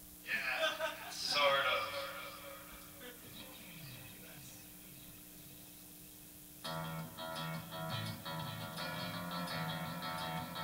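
A loud burst of sound in the first two seconds tails off with falling pitch sweeps. About two-thirds of the way through, an electric guitar played through effect pedals starts strumming in a steady rhythm, and it keeps going.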